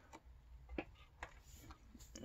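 A few faint clicks from cardboard cards being handled, otherwise near silence.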